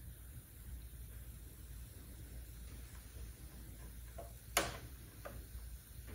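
A few small clicks over a quiet, steady low hum, the sharpest about four and a half seconds in, as the knob of a bench power supply is turned up.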